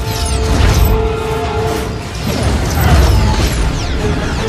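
Sci-fi chase sound effects over music: a steady low rumble with many quick, falling high-pitched whistles. A held tone drops out about two seconds in.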